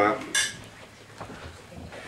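A single short, ringing clink of tableware, heard once about a third of a second in, after which only low room noise and a faint tick remain.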